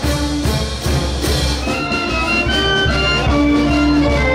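Brass band playing a tune: horns holding notes that step through a melody, over low drum beats.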